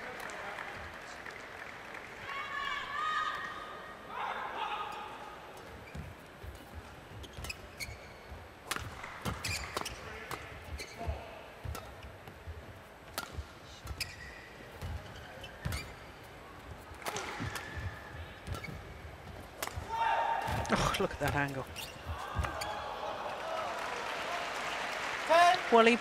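Badminton rally in an indoor arena: sharp racket strokes on the shuttlecock and squeaks from players' shoes on the court. The crowd noise gets louder in the last few seconds as the point ends.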